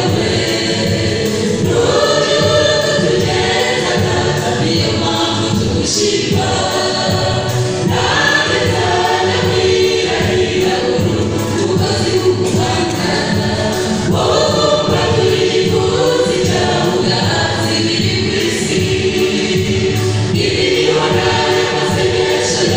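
Church choir singing a gospel song without a pause, amplified through microphones and loudspeakers.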